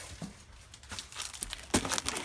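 Plastic sleeve of a 12x12 scrapbook paper pad crinkling and rustling as it is handled against a cardboard box, with a couple of sharper knocks about a second in and near the end.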